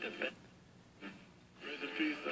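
1951 Philco 51-531 Transitone tabletop AM radio playing a broadcast voice faintly through its small speaker, in short stretches with gaps, as the dial is being tuned.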